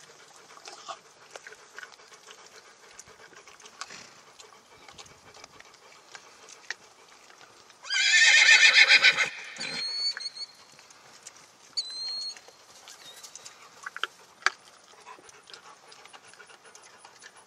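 A horse whinnies once, loud and about a second and a half long, about eight seconds in, followed by two short high whistles. Faint scattered clicks run through the rest.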